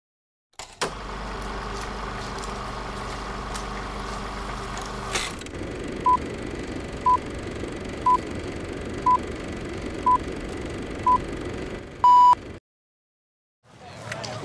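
Film-leader countdown sound effect: a steady crackling hum, then a short high beep once a second, six in all, ending in a longer, louder beep.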